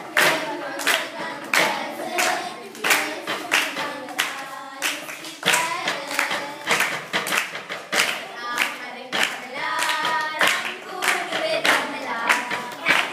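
A group of girls singing a baila song together, unaccompanied. Hand claps and hand-beats on a wooden tabletop keep a steady beat of about two strokes a second.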